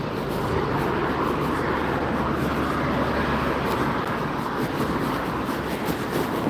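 Steady rush of passing road traffic, swelling a little in the first few seconds.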